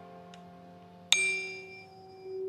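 A tuning fork struck once about a second in: a bright ding with high overtones that die away over about a second, leaving a steady pure ringing tone, as in a hearing test.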